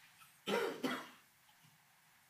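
A person coughing twice in quick succession, the two coughs about a third of a second apart.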